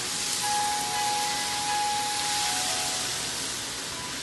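Vegetables stir-frying in hot oil in a wok over a gas burner: a steady sizzle as they are stirred.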